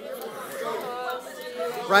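Several people speaking and praying aloud at once, a quieter overlapping chatter of voices in a large room, with one louder man's voice starting again near the end.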